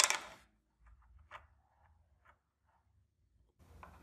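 A small aluminium block knocked against a metal gantry plate with one sharp metallic clack that rings briefly, followed by a few faint handling clicks and taps.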